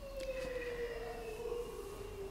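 A faint siren, its single wailing tone slowly falling in pitch.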